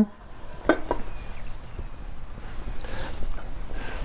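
Handling noise from a canvas haversack being packed: rustling as a cup is pushed into the bag, with a couple of light knocks about a second in.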